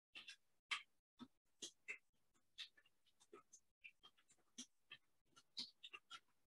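Faint computer keyboard typing: short, irregular keystroke clicks, a few a second, as a long command is typed.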